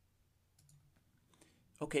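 Near silence with a couple of faint clicks, then a man's voice says "okay" near the end.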